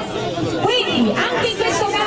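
Several voices talking over one another: group chatter with no other distinct sound.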